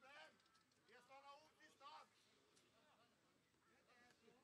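Faint, distant shouting voices: three short calls in the first two seconds, heard over quiet open-air ambience.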